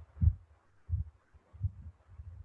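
Four soft, low thumps, about one every 0.7 s.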